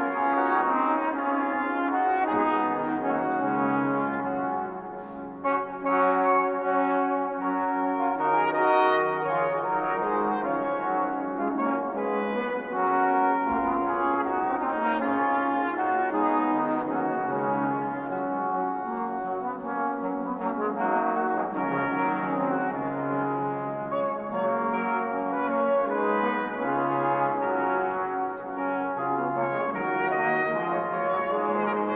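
Early-music brass ensemble playing Reformation-era polyphony, several sustained lines overlapping, with a brief pause between phrases about five seconds in.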